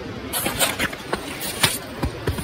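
Footsteps crunching through fresh snow, a few uneven steps a second, coming closer.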